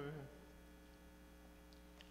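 The last sung note of a hymn dies away just after the start, then near silence with a steady electrical mains hum.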